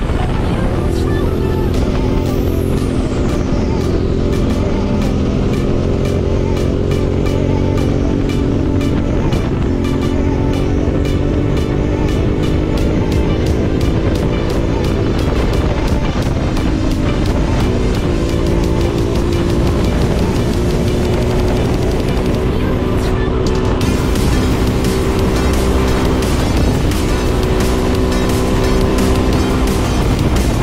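Yamaha Ténéré 700 parallel-twin engine running hard in sixth gear, its pitch climbing slowly as the bike gathers speed and dropping back briefly about three times. Background electronic music with a steady beat plays over it.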